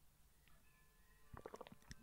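Near silence with faint hiss, then a quick run of small clicks in the last half second.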